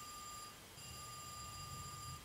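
Phone ringing faintly: a steady electronic ring tone with a short break about half a second in.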